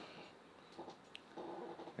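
Quiet room sound with a faint, off-mic voice murmuring briefly, twice.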